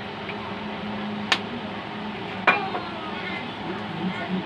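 Cooking oil being poured into a non-stick frying pan on the stove over a steady hiss and low hum, with two sharp clicks, one about a second in and one just past the middle.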